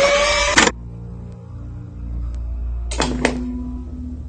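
Mechanical sound effects of a disc player's tray: a dense sliding sound that stops sharply just under a second in, a low steady hum, then two clicks about three seconds in followed by a short low tone.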